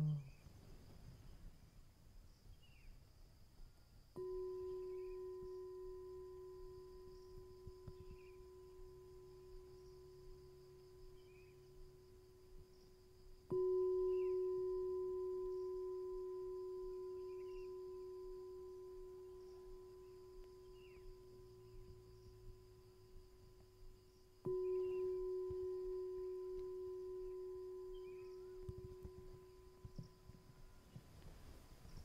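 A meditation bell struck three times, about ten seconds apart, each strike ringing on a steady low tone with a fainter higher one and fading slowly; the second strike is the loudest. It is the bell signal calling everyone to mindfulness.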